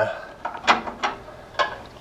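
A few small sharp metallic clicks as a hose clamp and rubber fuel hose are handled and pushed onto the flared end of a steel fuel line.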